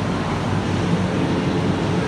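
Steady hum and rumble of an electric commuter train standing at a station platform, mixed with the noise of the platform around it.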